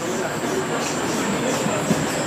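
Steady noise of a crowd of graduates stirring in a hall, with rustling, shuffling and faint chair clatter as they set their diplomas down on their chairs.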